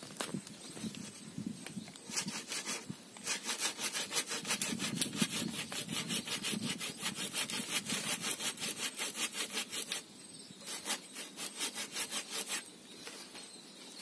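Hand saw cutting through a waru (sea hibiscus) branch in a steady run of quick back-and-forth strokes, with a short break about ten seconds in and another near the end.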